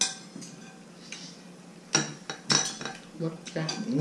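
A metal spoon clinking against a bowl: one clink right at the start, two sharper, ringing clinks about two seconds in, then a few lighter ones.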